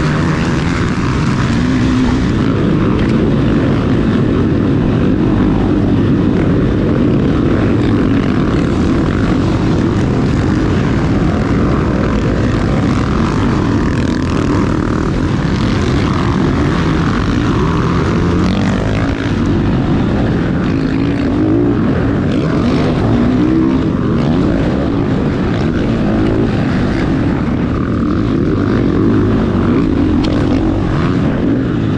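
Motocross bike engine running hard close up, its pitch rising and falling as the rider works the throttle and gears, over the engines of a pack of other dirt bikes racing nearby.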